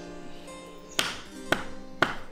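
Harpsichord music trailing off under sharp knocks about half a second apart in the second half, a ceremonial staff struck on the ground, with another knock right at the end.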